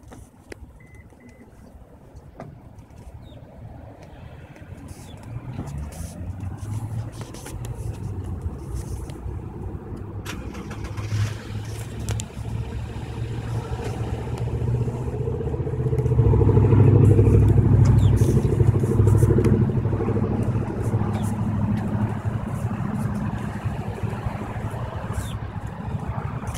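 A car engine running with a low hum, growing louder from about five seconds in and loudest a little past the middle, then easing slightly.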